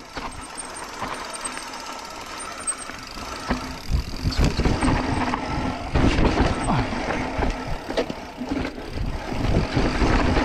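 Mountain bike rolling down a dirt trail: tyre noise on dirt with the bike rattling over bumps. It gets louder and rougher from about three and a half seconds in as the bike picks up speed, with many short knocks.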